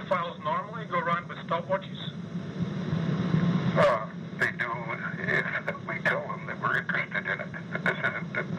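Speech only: two men talking, a question followed by a reply, on a muffled old interview tape recording. A steady low hum and hiss run underneath.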